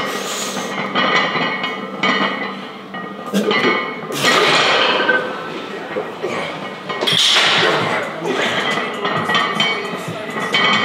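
Voices straining and calling out during a heavy barbell incline press, with metal clinks from the loaded bar and plates.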